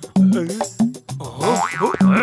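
Cartoon background music: a string of short notes that bend up and down in pitch over repeated low notes.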